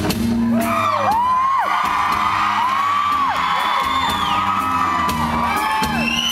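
A live rock band playing an instrumental stretch on electric guitar and bass, loud and steady. High whoops from the audience rise and fall over the music several times.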